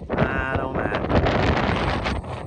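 Strong wind buffeting the camera microphone in gusts, loudest from about a quarter of a second in.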